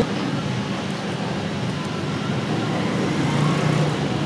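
Steady background noise with no distinct events, like traffic or machinery running, with a slightly stronger low hum near the end.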